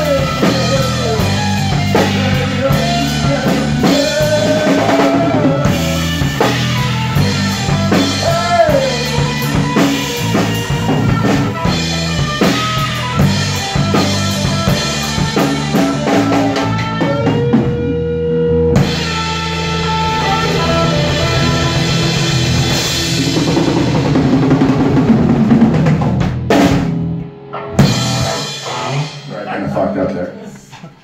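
Rock band playing live on a drum kit, with bass drum, snare and cymbals under sustained pitched instruments; the music breaks off near the end.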